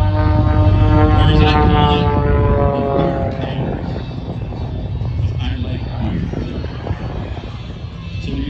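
Aerobatic airplane's engine droning overhead with a strong low rumble. Its pitched note slides slowly downward and fades out about three seconds in, leaving a duller rumble.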